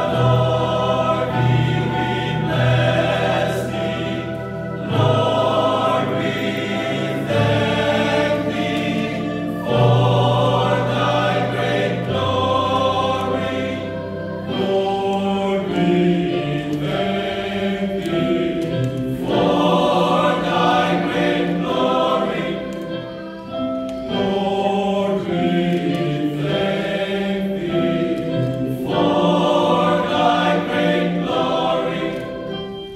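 A men's choir singing together in several voices, holding long notes that change every few seconds, with low sustained bass notes through the first half.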